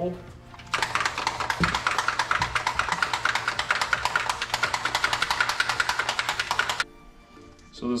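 A small bottle of bronze gold airbrush paint shaken hard for about six seconds, giving a fast, even rattle that stops abruptly; the paint is being mixed before it goes into the gun.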